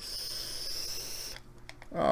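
A steady, high whistling tone with an airy hiss, lasting about a second and a half and then stopping, as air is drawn or blown through a small pen-shaped device held at the lips.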